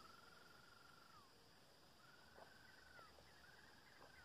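A bird calling faintly: three long whistled notes, each held level and then sliding down at the end, about a second apart.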